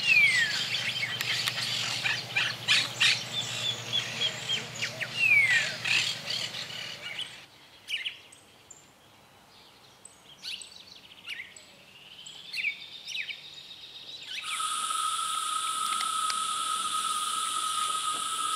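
Grebes calling, the juvenile begging as it chases the adult for a fish: rapid high chirps and clicks with a couple of falling whistles, over a low steady hum. After about seven seconds the calls thin out to scattered short notes, and in the last few seconds a steady high insect trill takes over.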